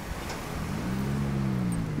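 Passing street traffic: a road vehicle's engine drone comes in under the background hum and grows louder over the second half.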